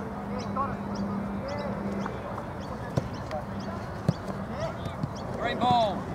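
Distant calls and shouts of players on a football pitch, with two sharp thuds of a football being kicked about a second apart, and a louder shout near the end.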